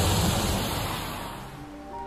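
Lotus Exige sports car driven fast, its engine and tyre noise a steady rush with a low hum that fades away over the first second and a half, over background music. A slow string melody begins near the end.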